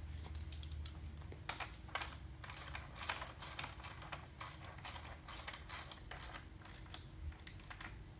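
Ratchet wrench clicking in quick repeated strokes as the ski mount's axle bolts are tightened down.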